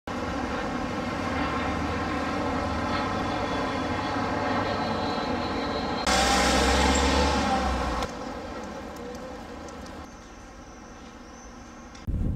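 City street traffic, with vehicles such as buses running past. The hum is steady, gets louder for about two seconds some six seconds in, then drops to a quieter level to the end.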